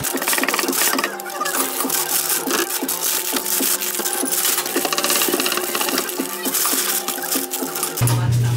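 Cellophane-wrapped cookies and a paper bag crinkling and rustling as the baked goods are packed by hand.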